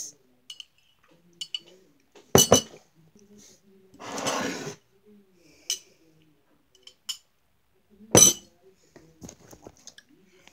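A ceramic mug clinking as it is handled, with a metal straw tapping inside it. Two loud sharp knocks, about six seconds apart, come from the mug being knocked or set down on a table. Between them there is a short rushing slurp of a sip through the straw, and a few faint light clinks.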